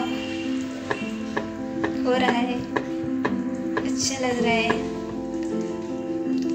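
Background music, with a wire whisk beating batter in a glass bowl: a scraping stir and irregular clicks of the wires against the glass.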